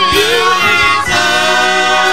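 Gospel singing: a choir of voices holding long, wavering notes over musical accompaniment.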